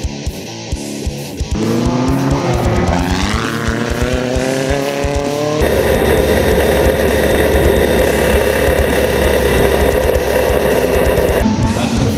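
A dirt-track race car's engine heard from the cockpit, its pitch climbing as it revs up, then holding a steady high drone. It cuts in over a rock music track about a second and a half in, and the music returns near the end.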